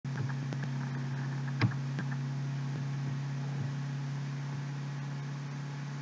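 A steady low hum with a few faint clicks, and one sharper click about one and a half seconds in.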